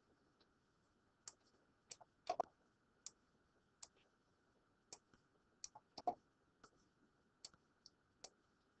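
Faint computer mouse clicks, about a dozen at irregular intervals, some in quick pairs, made while clicking and dragging items on screen.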